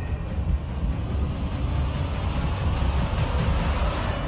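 A loud, steady, deep rumble, with a hissing roar that swells in the second half.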